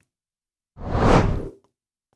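A single whoosh sound effect for a graphics transition. It swells up and dies away in under a second, about a second in.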